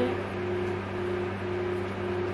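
Electric fan running: a steady low hum over an even haze of air noise.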